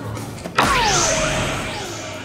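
Electronic soft-tip dartboard's bull-hit sound effect as a dart lands in the single bull: a sudden electronic whoosh with a falling tone and a rising sweep that fades over about a second and a half.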